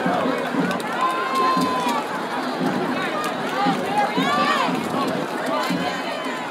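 Street crowd of parade spectators talking and calling out, many voices overlapping into an indistinct hubbub, with a held high note about a second in.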